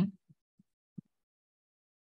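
Near silence after the end of a spoken word, broken by a few faint, short, low thumps from typing on a computer keyboard.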